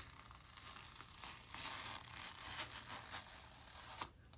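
An adhesive silkscreen transfer being peeled slowly and evenly off a placemat after inking, giving a continuous, even peeling noise that swells a little in the middle.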